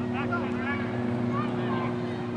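Distant voices of players calling across a grass soccer field, with short shouts over a steady low machine hum.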